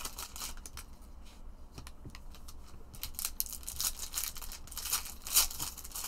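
Foil wrappers of Prizm football card packs crinkling and crackling as they are handled and torn open by hand, sparse at first and busier in the second half.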